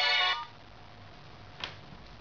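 A phone ringtone playing in steady electronic tones, cut off abruptly about a third of a second in. A single faint click follows near the end.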